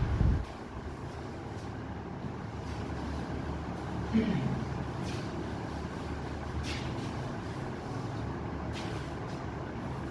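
A board duster being rubbed across a whiteboard to wipe it clean, over a steady low hum. A low thump at the very start, and a few faint clicks.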